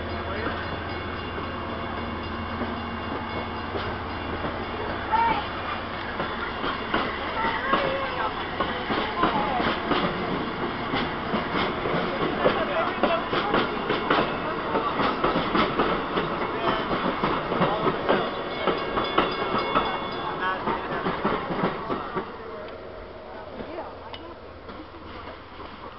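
Stainless-steel passenger train cars rolling past at close range, the wheels clattering and clicking over the rail joints. A low engine hum runs under the first few seconds, and the clatter fades away near the end as the train goes by.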